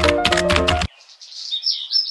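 Background music with a light percussive beat cuts off abruptly about a second in. Softer high bird chirps follow.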